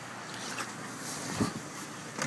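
Steady low background noise of a car with its engine running, heard from the driver's seat, with a brief low thump about one and a half seconds in.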